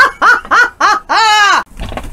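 A woman laughing loudly: four quick bursts of laughter, then one long, drawn-out high laugh that falls away.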